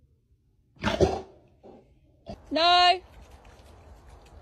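A large dog gives one short, loud bark about a second in. Later a person calls out once in a high, drawn-out voice.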